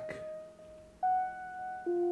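Software synthesizer notes from the ML-2 groovebox, played one at a time on the Akai Fire's pads as a chromatic keyboard: a held note, a higher one about a second in, then a lower one near the end.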